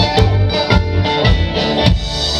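Live band music: electric guitar, bass, mandolin and drums playing together, with strong accented beats about twice a second. The singer's last word of a line falls at the very start.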